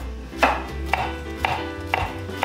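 A large kitchen knife slicing collard greens into thin strips on a wooden cutting board: four crisp blade-on-board strikes, about two a second.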